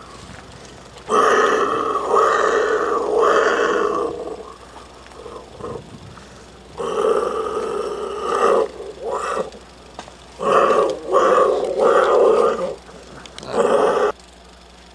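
A man's loud wordless vocal noises, coming in several bursts of a second or more with short pauses between.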